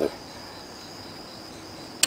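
A steady, thin high-pitched tone with faint hiss underneath. No handling sounds stand out.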